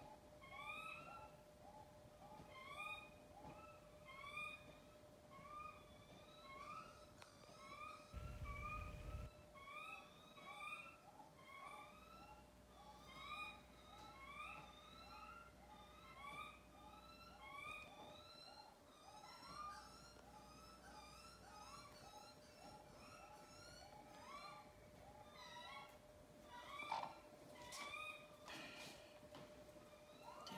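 Soft, short whining calls from a hen, repeated over and over at about two a second while she is held and her infected ear is swabbed. There is a brief low bump about eight seconds in.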